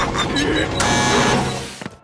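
Cartoon sound effect of the cauldron ride's machinery as the emergency button is pressed: a mechanical whirring and hissing with a low hum that winds down and cuts off with a click near the end, over music.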